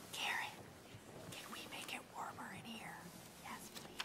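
Faint hushed voices away from the microphones: people whispering and murmuring, with a louder whispered burst just after the start.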